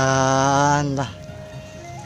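A man's voice calling out one long drawn-out note, held level and cut off about a second in, as an eel is landed.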